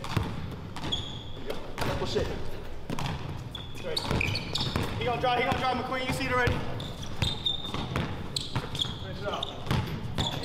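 A basketball dribbled on a hardwood gym floor, with repeated bounces ringing in a large indoor hall. Short high squeaks are heard now and then, and players' voices come in about halfway through.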